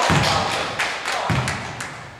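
Basketball thudding twice on a wooden sports-hall floor, the bounces about a second and a half apart, each ringing on in the hall.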